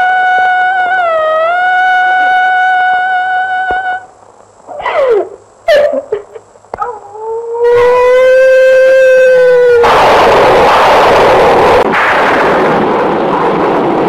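A woman's long, high, drawn-out wailing cries of grief, broken by shorter gliding sobs in the middle. A loud hissing rush of sound takes over about ten seconds in.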